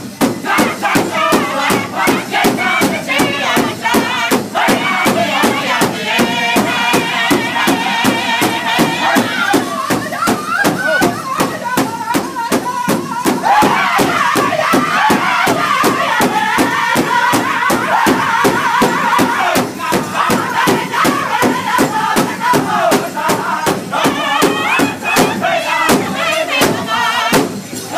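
Pow wow drum group singing together in high, strained voices over a large hide drum struck in unison with drumsticks, a steady beat of about three strokes a second; women's voices sing along behind the men.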